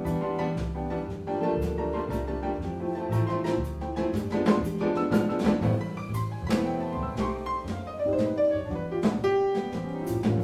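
Jazz band playing a slow waltz: piano, with double bass and drums keeping time under it.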